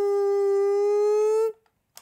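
A man's voice holding one long, steady high note that cuts off about one and a half seconds in, followed by a short click.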